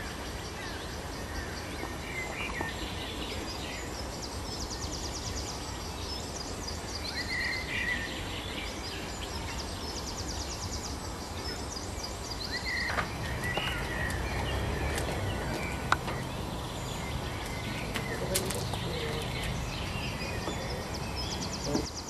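Small songbirds singing, with repeated high trills and chirps, over a steady low rumble of outdoor background noise. A single sharp click about three-quarters of the way through.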